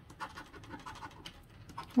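Plastic scratcher scraping the scratch-off coating from an instant lottery ticket in rapid short strokes, starting a fraction of a second in.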